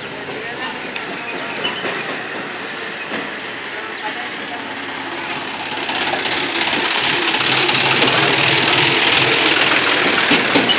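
A John Deere farm tractor's diesel engine running as it passes close, pulling a trailer, getting louder about six seconds in.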